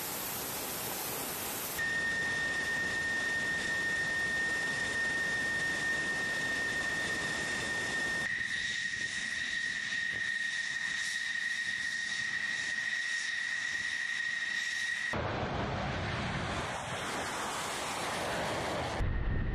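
F-16 Fighting Falcon jet engine running: a loud rushing jet noise with a steady high-pitched turbine whine. The whine stops about 15 seconds in, giving way to a deeper, fuller jet rush.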